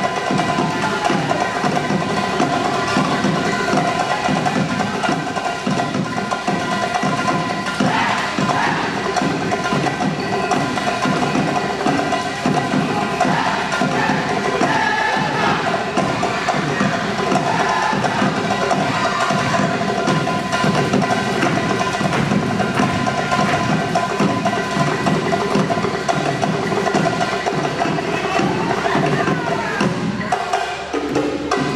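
A live Costa Rican folk dance band plays lively music, with drums and percussion keeping a steady, unbroken beat under a sustained melody.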